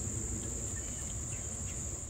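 Insects trilling in a steady, high-pitched chorus over faint low background noise.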